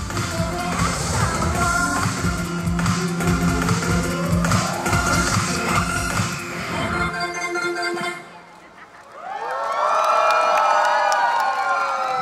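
Amplified live pop dance track with a heavy beat through a concert PA, ending about seven seconds in after a rising sweep. After a short lull, the audience cheers and screams.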